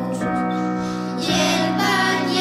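A group of children singing a Lucia song together in held notes, with a female voice among them.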